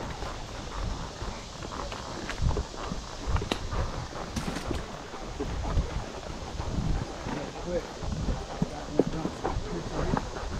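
Hooves of horses walking on a dirt forest trail: an uneven run of soft clops.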